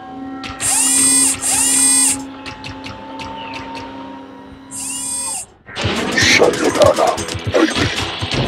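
Three loud, drill-like mechanical whirring bursts over a steady low hum, the first two close together and the third a few seconds later. Music starts near the end.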